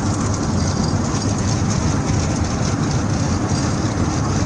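Steady road noise inside the cabin of an ambulance driving at about 120–130 km/h: a low rumble of engine and tyres with wind hiss above it.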